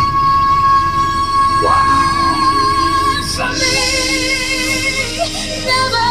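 A female pop vocalist belts a long, steady high note, then drops lower on a wavering vibrato about halfway through and climbs back up near the end. Instrumental ballad backing plays underneath.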